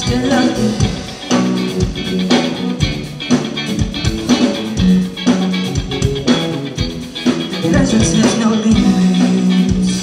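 Live rock band playing amplified electric guitars, bass guitar and drums, with a steady drum beat.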